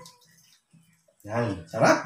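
Speech: after about a second of quiet, a person says a couple of short words.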